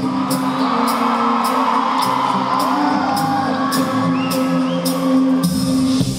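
Live pop-rock band playing with a steady drumbeat of about two strokes a second, recorded from the audience, with a crowd screaming and cheering over the music, loudest in the first half.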